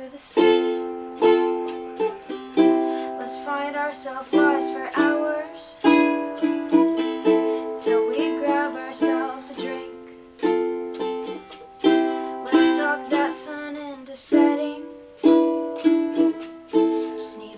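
A ukulele being strummed: chords struck in a loose rhythm, each ringing and fading before the next strum.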